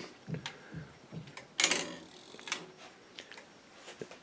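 Home-made longcase clock movement ticking faintly on a test stand, about one tick a second. A brief, louder rustle comes about one and a half seconds in.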